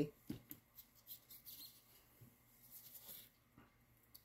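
Faint scattered small ticks and scratches from handling a plastic cup of white resin as fine glitter is added to it.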